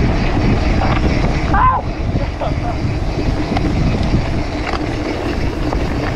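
Wind rushing over the camera microphone of a mountain bike ridden fast down a dirt trail, with the rumble and occasional knocks of the bike over the ground. A short voice call comes about a second and a half in.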